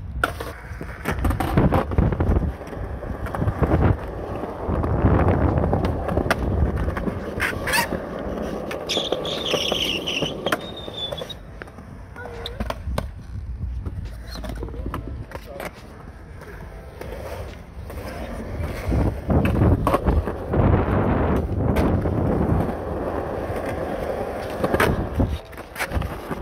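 Skateboard wheels rolling on concrete in a low, continuous rumble that swells and fades as the boards pass, with sharp clacks of a board hitting the ground now and then.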